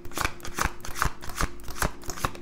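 A deck of tarot cards being shuffled by hand: a rhythmic run of short, crisp card strokes, about every half second or faster.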